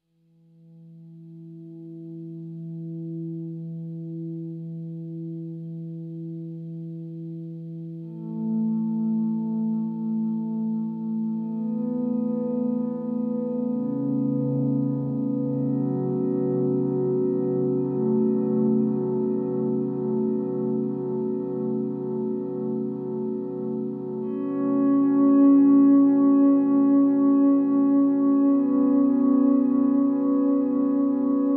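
Electric guitar played through a Red Panda Raster 2 digital delay pedal: low swelled notes fade in and ring on in long, echoing repeats, and higher notes layer on top. The wash grows louder in steps, about eight seconds in and again near the end.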